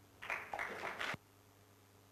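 Brief, faint audience applause lasting about a second, cut off abruptly.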